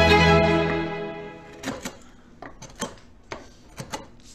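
Sustained string music fades out over the first second and a half. Then a hand file scrapes in short, irregular strokes against the wooden edge of a violin plate.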